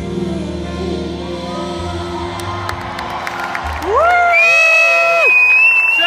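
Live concert music with steady held notes, then about four seconds in, loud, long, high-pitched whoops and screams from the audience over crowd cheering.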